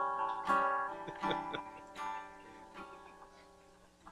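Acoustic guitar: two strummed chords, then a few lighter picked notes that die away, fading to quiet near the end.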